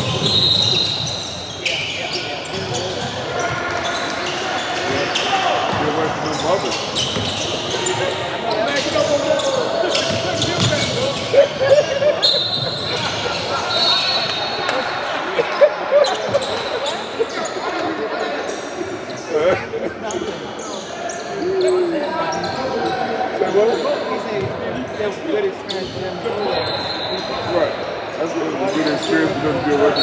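Basketball game in a large gym: a ball bouncing on the hardwood floor, voices of players and spectators, and a few short high-pitched squeals, all echoing in the hall.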